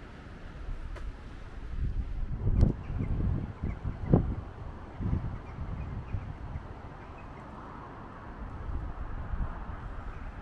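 Wind buffeting the microphone in gusts, a low rumble that swells and is loudest about two to four seconds in.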